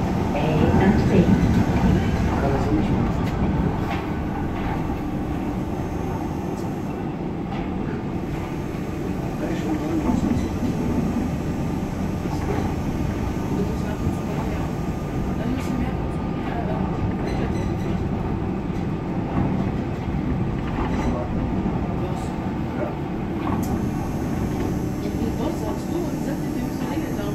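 Suspended H-Bahn SkyTrain car running along its overhead box guideway, heard from inside the car: a steady rolling and drive noise from its rubber-tyred bogies and electric motors.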